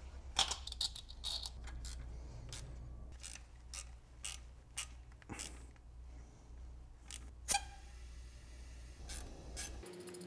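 Scattered metal clicks and clinks of a valve spring compressor tool being positioned and adjusted on the exposed valvetrain of a BMW N62 V8 cylinder head, the sharpest about half a second in and again near the end of the second third. A low steady hum runs underneath.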